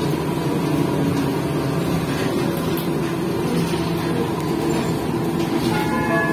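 Interior running noise of a Škoda 15Tr articulated trolleybus on the move: a steady, low hum of the electric traction drive with a faint thin whine over it, plus road and body noise.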